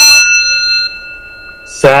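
A bell or chime struck once, ringing with several clear high tones that fade away over about two seconds.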